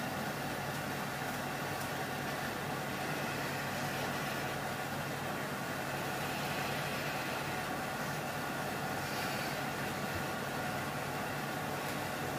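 Steady low hum with an even hiss of background noise and no distinct events.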